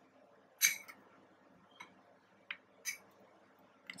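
A metal spoon clicking against a ceramic bowl as it stirs chunks of cooking chocolate, about five sharp clicks with the first one the loudest, over the faint simmer of the water bath beneath.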